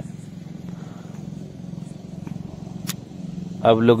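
A steady low engine hum, like a motor vehicle running nearby, with one sharp click about three seconds in.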